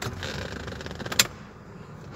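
Electric power seat motor running as the seat moves forward, now working because voltage is being fed to its dead supply wire by hand. There is a sharp click a little over a second in, after which it is quieter.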